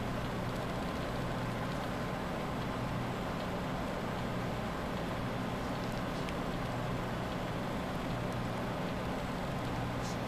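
Steady low background hum with hiss, unchanging throughout, with a couple of faint ticks.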